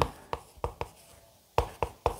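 Chalk writing on a blackboard: about five short, sharp taps and scrapes as strokes are made, with a brief pause in the middle.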